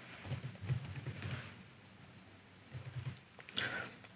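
Typing on a computer keyboard: a quick run of keystrokes, a pause of about a second in the middle, then a few more keystrokes near the end.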